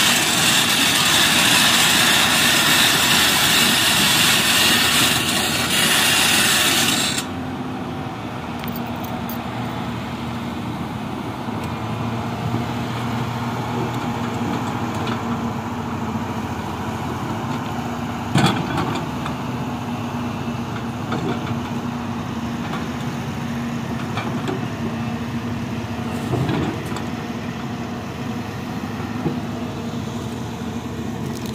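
Hyundai 225 LC crawler excavator's diesel engine running steadily while it works. A loud, harsh hiss covers the first seven seconds and then cuts off abruptly. A single sharp knock comes about 18 seconds in.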